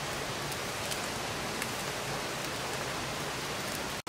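Thin-sliced meat sizzling on a wire mesh grill over glowing charcoal: a steady hiss with a few faint crackles through it, cutting off abruptly at the end.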